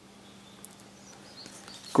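Quiet room with a faint steady hum and a single light tick, from a CD booklet and plastic jewel case being handled.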